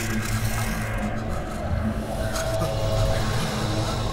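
A low, steady rumbling drone, part of the film's eerie sound design, with a faint higher tone joining it about halfway through.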